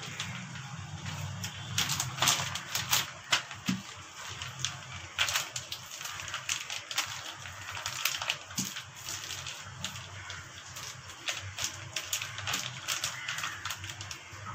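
Wooden rolling pin rolled back and forth over a plastic sheet on a stone counter, with irregular crinkles and clicks from the plastic and the pin, over a low steady hum.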